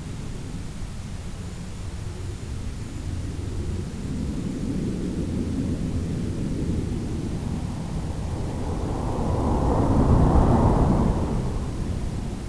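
Rushing wind and motor noise from an electric FPV model airplane flying low and fast. It is a steady rumble that swells partway through and is loudest about ten seconds in.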